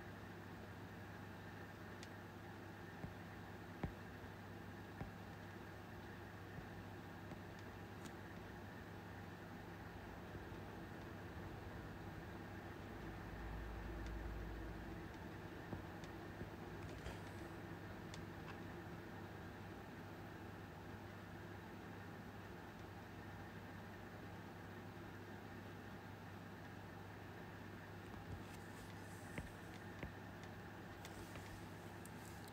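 Faint steady hum of room tone, with a few soft clicks of a stylus tapping a tablet screen while drawing, and a brief low rumble near the middle.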